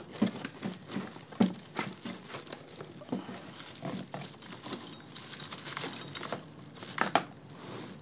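Plastic packaging crinkling and rustling as packed parts are handled in a cardboard box, with scattered light clicks and knocks and one louder knock about seven seconds in.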